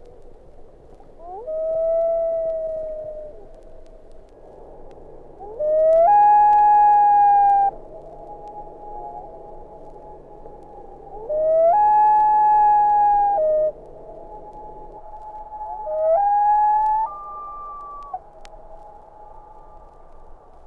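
Common loon wail calls, four long drawn-out cries. The first, about a second and a half in, is softer and slides slightly down. The next two, at about 6 and 12 seconds, jump up to a higher held note. The last, near 16 seconds, climbs in steps to a still higher note, with fainter held wailing between the louder calls.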